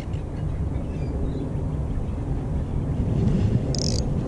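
Steady low rumble of outdoor background noise, with a short high hiss near the end.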